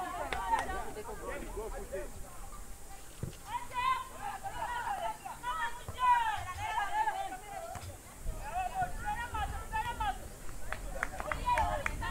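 High-pitched voices shouting and calling out, with a few sharp knocks near the end.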